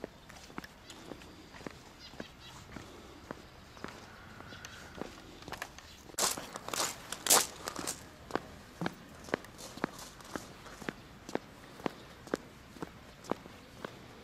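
Footsteps walking at a steady pace of about two steps a second on a stone-paved path, each step a sharp click. There is a louder, noisier stretch of crunching or scuffing about halfway through.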